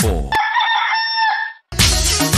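Dance-track intro built from farmyard samples. After a falling bass-kick sweep, a rooster crow is held on one steady pitch for about a second. It breaks off briefly and the full dance beat comes in near the end.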